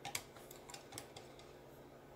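Faint, irregular light clicks of a sharpening-stone holder rocking on the steel guide rod of a Work Sharp Precision Adjust: the holder's rod hole is oversized, leaving a good bit of slop.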